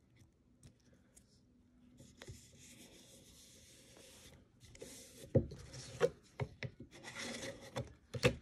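Hands rubbing and smoothing glued paper down onto the side of a box, starting about two seconds in and growing louder in the second half, with a few sharp knocks as the box is handled and turned.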